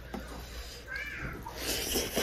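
A cat meows once, a short call that rises and falls in pitch about a second in. A brief rustle follows just after it.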